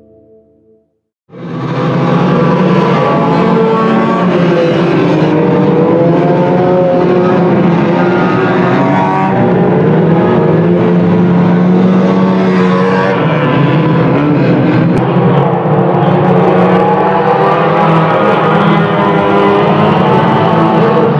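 A pack of banger racing cars racing together at full throttle, several engines revving at once so that their pitches overlap and rise and fall. The sound cuts in suddenly just over a second in.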